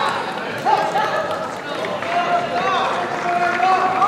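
Several voices shouting over each other above a crowd murmur, with a long drawn-out call in the second half: team members and supporters calling out to the judoka.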